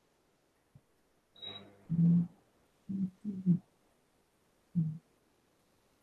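Faint, muffled snatches of a narrating voice from a music-and-narration recording for cardiac rehabilitation patients, played over a video call; it cuts in and out in about five short bursts.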